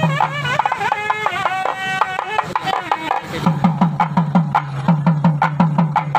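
Traditional Tamil temple-procession music: a melody of held notes with sliding ornaments for about the first three seconds. Then a hand-struck drum takes up a fast, even beat of low strokes.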